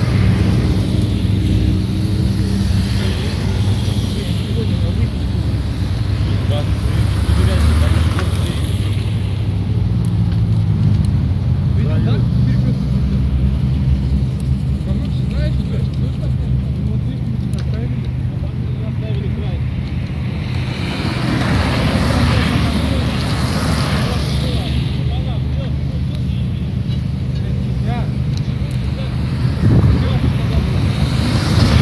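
Road traffic close by: car and light-van engines running, with a louder vehicle passing about twenty-two seconds in.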